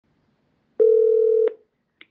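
Telephone ringback tone: one steady mid-pitched beep lasting under a second, the line ringing before the call is answered.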